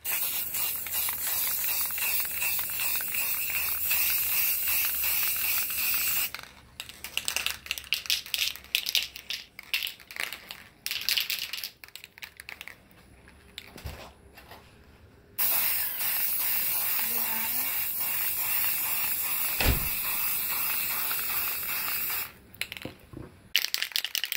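Aerosol can of yellow spray paint hissing as a first coat goes onto a metal license plate. A long steady spray of about six seconds gives way to a stretch of short, choppy bursts, then a second long spray of about seven seconds, ending in more short bursts.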